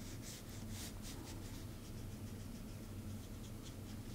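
Faint, repeated short strokes of a small watercolor brush on watercolor paper, a soft scratchy brushing over a low steady room hum.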